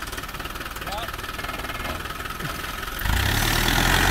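Land Rover Discovery 4x4's engine idling, then rising sharply in level about three seconds in as the vehicle pulls forward on the dirt track.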